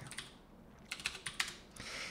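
A computer keyboard typing a few faint, separate keystrokes, most of them about a second in, as a short terminal command is finished and entered.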